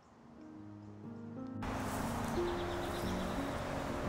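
Background music of held, sustained notes fading in. About one and a half seconds in, a steady outdoor background hiss cuts in abruptly beneath the music.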